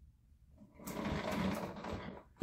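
Rustling and creaking as a person sits down in a leather office chair, lasting about a second and a half and starting about half a second in.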